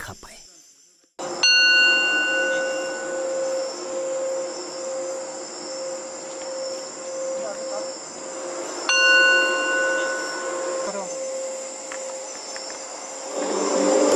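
Singing bowl struck twice with a mallet, about a second in and again near nine seconds in, each strike ringing out in several clear tones that fade. Between the strikes a steady, wavering tone is kept up as the mallet is worked round the rim. Crickets chirp throughout.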